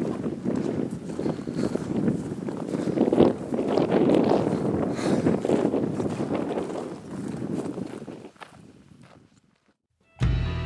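Footsteps on dry grass and stony ground, close to the microphone, fading out shortly before the end.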